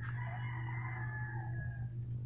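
A single long, drawn-out animal call lasting nearly two seconds, over a steady low hum.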